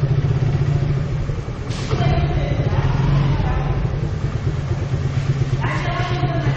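Motorcycle engine running at low speed, a steady low hum with a fast pulse under it.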